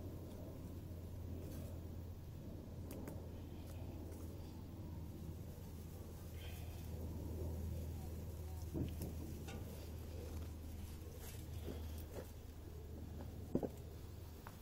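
Dry grass tinder rustling and crackling faintly as a hand presses it into a nest and gathers it up, over a steady low hum. A sharp click sounds near the end.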